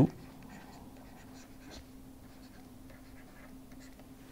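Faint scratching of a stylus writing on a tablet screen, over a low steady hum.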